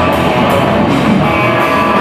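Hardcore band playing live and loud: distorted electric guitar over bass and drums, with cymbal hits cutting through.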